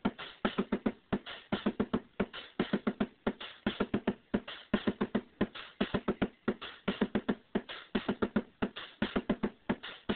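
A simple two-channel electronic drum pattern: an Arduino step sequencer in drum mode triggers a bass drum voice on a homebuilt Midwest Analog Products synth and a snare-like hit on a Sound Lab synth. The result is a fast, steady beat of short analog drum hits.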